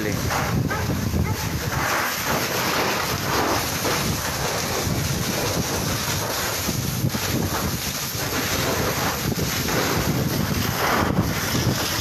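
Steady rushing noise of a burning house being hosed down by firefighters, the water jet and the fire blending together, with wind on the microphone.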